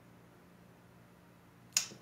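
Quiet room tone with a faint steady hum, broken near the end by a single short, sharp click.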